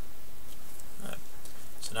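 Steady background hiss with one short vocal noise about a second in. A man starts speaking just at the end.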